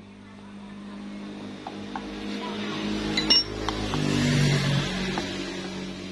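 A sharp metallic clink about three seconds in as the aluminium pump housing is set onto the scooter's engine case, over a steady engine hum from a vehicle that grows louder toward the middle and then eases off.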